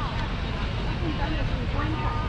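Busy city street ambience: a steady low traffic rumble, with scattered voices of people talking nearby.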